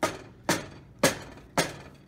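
A large kitchen knife stabbing into a block of instant noodles in a pot of water, the blade knocking against the metal pot four times, about half a second apart.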